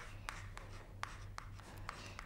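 Chalk writing on a blackboard: a string of short, faint taps and scratches as letters are chalked onto the board.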